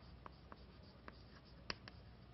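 Faint chalk writing on a chalkboard: a few short, scattered taps and ticks of the chalk against the board, the clearest near the end.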